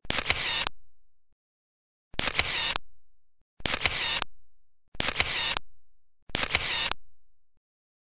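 Photo booth camera shutter sound going off five times, one to two seconds apart, each a sharp click with a short fading tail, as the booth takes a series of pictures.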